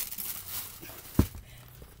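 Plastic packaging bag rustling as it is handled, dying away within the first half second, then a single sharp thump about a second in.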